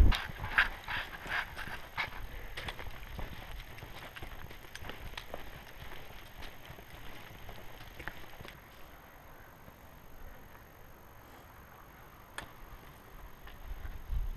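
Footsteps on a rocky dirt trail, a walking rhythm of about two to three steps a second that grows fainter and sparser in the second half, with one sharp click near the end.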